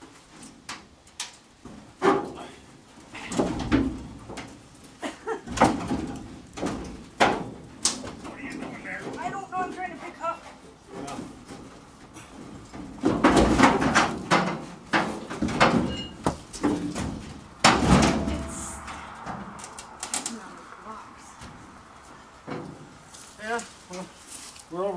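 Steel truck box being pried and slid back along the truck's frame by hand: a run of irregular metal bangs, clanks and scrapes. The loudest come about two seconds in, around the middle, and about three-quarters of the way through.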